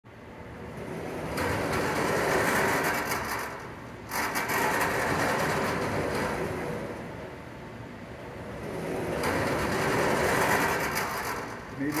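Tote-mover track conveyor carriers rolling around curved aluminium rails with a rattling mechanical rumble. The sound swells and fades as the carriers pass, with a sudden jump in loudness about four seconds in.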